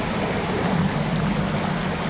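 Shallow creek water running over rocks in a riffle: a steady, even rush of flowing water.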